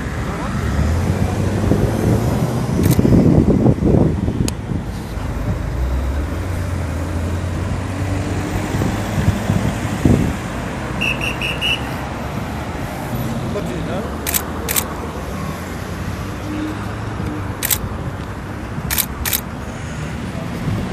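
Roadside traffic noise over a steady low engine hum, with one vehicle passing loudly about three seconds in. Voices talk in the background, and a few sharp clicks come near the end.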